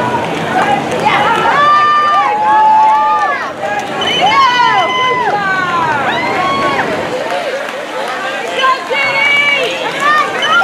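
Several spectators shouting and cheering at once, overlapping high-pitched calls of encouragement to runners nearing the finish line of a road race.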